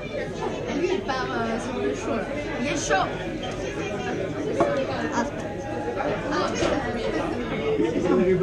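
Several people talking at once in a small room: audience chatter, with no music playing.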